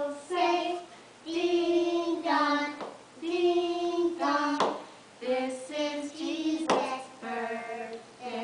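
Young children and women singing a slow song together in held notes, phrase by phrase with short breaths between. Three sharp knocks or claps cut in, a couple of seconds apart.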